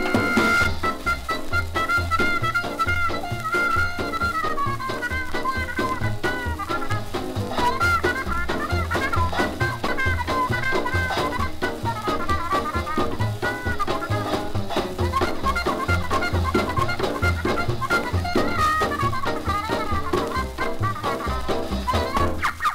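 A small swing dance band plays an instrumental fox-trot passage with a steady beat, heard from a 1938 shellac 78 RPM record.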